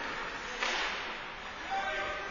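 A single sudden, sharp swish-scrape on the rink ice about half a second in, fading quickly, over the steady background noise of an indoor ice rink during hockey play.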